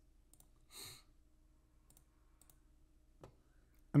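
A few faint, scattered computer mouse clicks, with one short breath about a second in.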